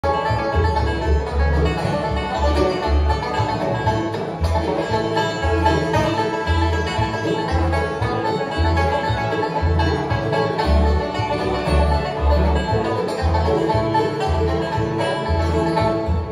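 Bluegrass band playing an instrumental passage: banjo, fiddle, dobro, acoustic guitar and mandolin over upright bass notes on a steady two-beat, about two a second.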